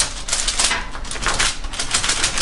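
Fingertips pressing and patting bread dough flat on a baking-paper-lined tray: a quick, irregular patter of light taps.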